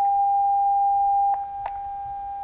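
Steady pure test tone from two identical speakers driven by a signal generator. About a second and a half in, a click is followed by a second click, and the tone drops sharply to a much quieter level: one speaker's leads are reversed in polarity, so the two speakers play in anti-phase and largely cancel.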